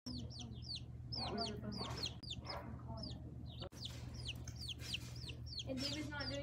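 Young chickens peeping over and over: short, high chirps that fall in pitch, several a second, over a low steady hum. The sound drops out for an instant about two-thirds of the way through.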